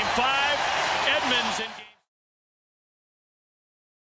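Stadium crowd cheering and shouting after a walk-off home run. The cheering fades out quickly about two seconds in, leaving silence.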